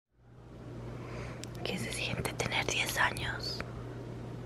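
Someone whispering softly, starting about a second and a half in, over a steady low hum.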